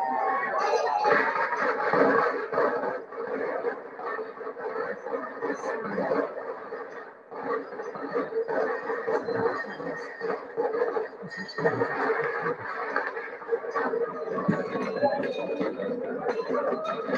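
Crowd noise from a Sussex bonfire society street procession, continuous chatter and bustle with a steady hum under it, heard as a recording played back over a video call, so it sounds thin and compressed.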